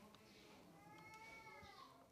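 A faint single cat meow, one drawn-out call that rises and then falls in pitch over about a second, starting a little past halfway in, over quiet room tone.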